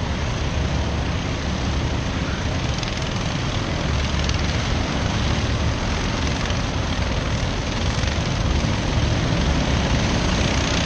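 A pack of racing kart engines droning across the circuit, a steady, blurred roar with no single engine standing out, growing slightly louder near the end as the karts come round.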